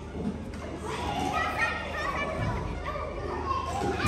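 Several children's voices calling and chattering at once while they play, faint and overlapping, over a steady low hum.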